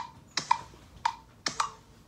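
GarageBand's metronome clicking on an iPad, a steady tick about twice a second, with a couple of extra clicks between the beats.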